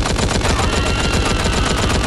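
Film soundtrack of a hand-cranked Gatling gun firing a rapid, unbroken stream of shots.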